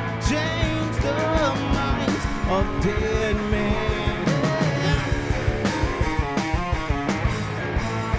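Live rock band playing: electric guitars, cello, bass and drums, with a steady drum beat under a lead line that bends in pitch and wavers in quick vibrato a little past the middle.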